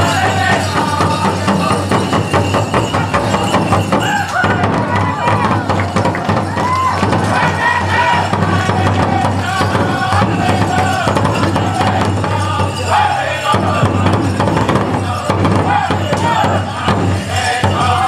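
A powwow drum group singing a men's fancy dance song: voices over a fast, steady beat on the big drum, with the dancers' bells jingling.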